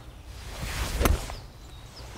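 Whoosh of a golf swing rising into a single sharp click as a 4 hybrid (rescue) club strikes the ball off the tee, about a second in.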